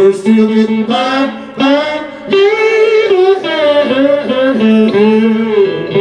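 Live blues music: a single lead line of long held notes that bend and waver in pitch, with no bass or drums heard under it.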